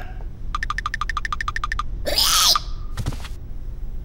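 Cartoon sound effects: a fast run of about a dozen short pitched pips, then a brief louder squeal-like cry, and a short knock about three seconds in.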